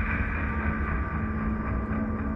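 Horror-film soundtrack drone: a loud, steady, dense rumble with a held low tone and a held high tone, the sustain of a sudden scare hit.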